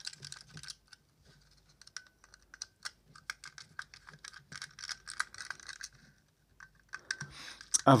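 Small screws being turned out of a plastic head torch housing with a precision screwdriver: a run of light, irregular clicks and ticks.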